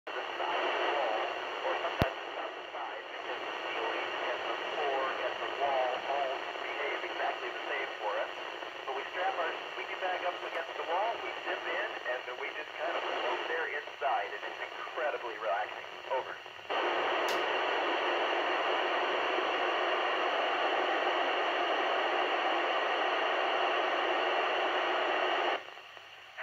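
Handheld Yupiteru multi-band scanner receiving the 145.800 MHz FM downlink. For about the first two-thirds, an unclear voice sits buried in heavy radio noise. Then comes a steady hiss of open squelch with no voice, which cuts off abruptly near the end.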